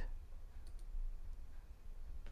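A quiet pause with a steady low hum and a few faint clicks.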